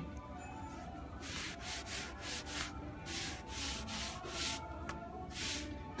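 A folded gauze pad wiping gel stain over a painted wooden picture frame: repeated rubbing strokes, about two or three a second, starting about a second in.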